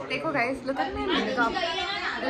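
Speech only: a woman talking close to the phone, with chatter from others in the room.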